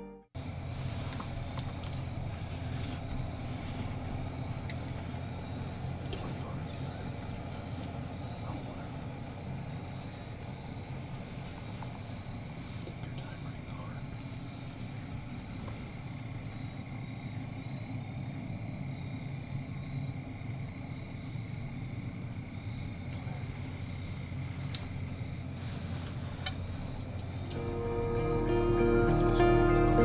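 Steady outdoor evening ambience: a constant high insect drone over a low rumble, with a couple of faint clicks near the end.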